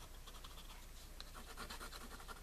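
Faint scratching of a Derwent watercolour pencil colouring on cold-pressed watercolour card, in many quick short strokes.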